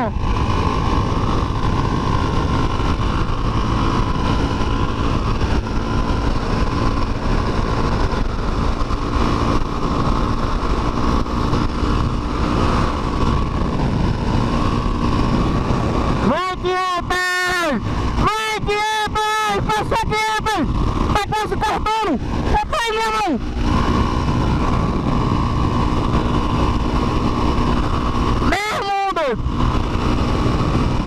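Motorcycle engine running steadily at cruising speed, with strong wind rush at the handlebar-mounted microphone. From about halfway through, a run of short, high, wavering pitched sounds lasts several seconds, and one more comes near the end.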